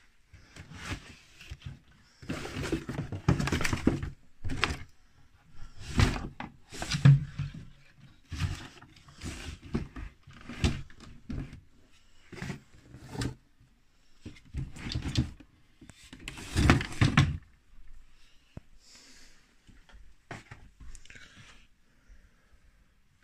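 Someone rummaging through belongings: a dresser drawer sliding open and shut, and objects knocked, shifted and rustled. The knocks and scrapes come in irregular bursts, loudest near the start, in the middle and about three-quarters of the way through.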